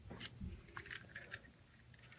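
Faint, irregular clicks and light crunching of LEGO plastic parts being handled.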